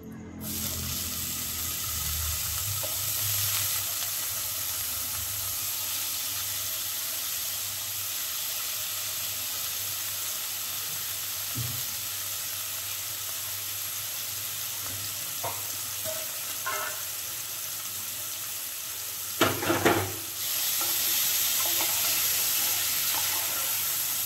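Paneer cubes frying in fat in a hot non-stick pan, a steady sizzle that starts about half a second in. Near the end a spatula knocks against the pan a few times, and after that the sizzling is louder.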